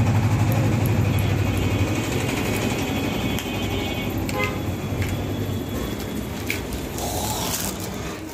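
An engine running steadily, its low hum loudest at first and slowly fading, with a few small clicks over it.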